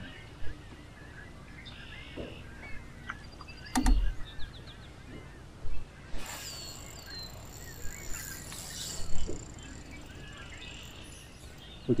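Quiet open-air ambience with faint scattered bird calls. There are a few short knocks, the sharpest about four seconds in, and a brief rush of noise with falling whistle-like calls around six seconds in.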